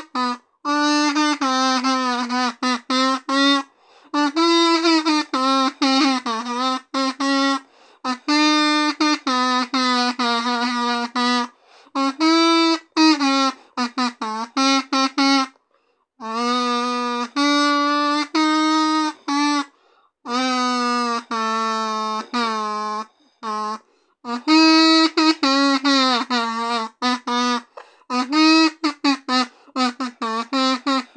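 A solo kazoo buzzing a song melody, unaccompanied, in phrases a few seconds long with short silent gaps between them.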